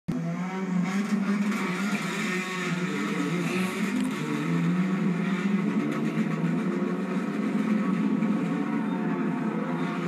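Stunt race cars' engines running and accelerating toward a double vertical loop, heard through a television's speaker.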